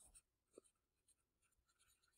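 Very faint scratching of a pen writing a word on lined notebook paper.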